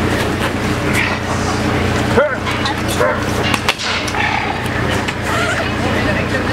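Steady low mechanical hum under scattered distant voices, with a short pitched yelp about two seconds in. Close handling and rustling as gear is packed into a duffel bag.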